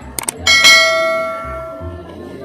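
Two quick mouse clicks followed by a bright bell ding that rings out and fades over about a second: the click-and-bell sound effect of a subscribe-button and notification-bell animation.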